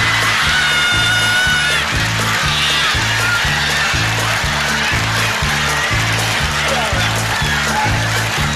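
A man's high-pitched imitation of a female mule's bray, one held call of about a second and a half, over a country band's accompaniment with a steady beat. A shorter squeal follows about a second later.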